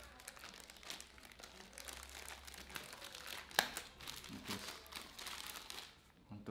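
Plastic packaging bag crinkling and crackling as it is handled and opened and a reel cover is pulled out of it, with one sharper crackle about three and a half seconds in.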